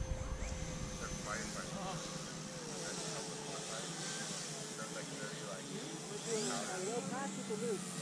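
Faint, steady whine and hiss of electric ducted-fan model jets flying at a distance, the pitch dipping slightly partway through, with faint voices murmuring in the background.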